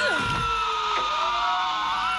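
Film soundtrack from a sci-fi monster fight: a drawn-out creature shriek made of several tones that slowly fall in pitch, with a quick downward swoop about a moment in.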